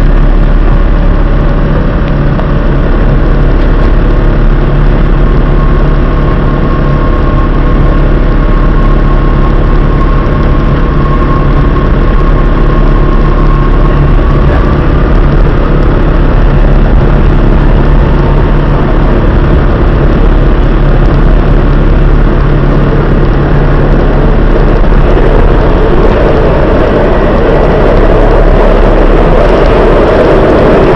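Washington Metro train running, heard from on board: a steady loud hum with a whine that rises in pitch about halfway through as the train gets moving. A louder rushing noise builds near the end as it runs into the tunnel.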